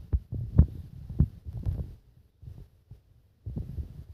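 Irregular low thumps and knocks, several a second, from a dog playing with its face up against the phone and bumping it. They are dense in the first two seconds, almost stop for a moment, and pick up again near the end.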